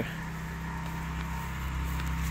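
A motor running steadily, a low hum of several constant tones with a faint high tone above it.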